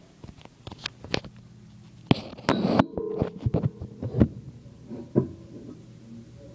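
Handling noise of a phone being moved and set down, picked up right on its microphone: a string of knocks and clunks, with a loud rustling burst about two seconds in that cuts off suddenly.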